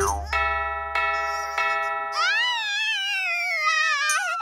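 A cartoon clock chime strikes three times for three o'clock, its bell tones ringing on. From about halfway, a long falling slide-whistle glide plays under a wavering cartoon cry.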